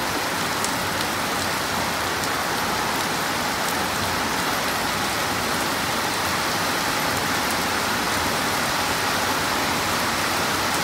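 Heavy rain pouring onto a wet road and pavement: a steady hiss with scattered sharp drop ticks.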